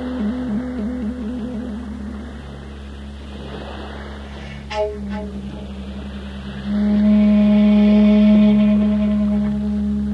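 Shakuhachi music. A low wavering note fades out in the first two seconds, a single bell strike rings out near the middle, and from about seven seconds in a loud, steady low flute note is held.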